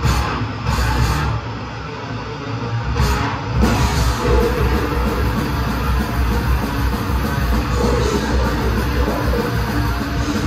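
Old-school death metal band playing live: distorted electric guitars, bass and drums, heard from the crowd. A few sharp accented hits in the opening seconds, then the full band comes in densely from about three and a half seconds in.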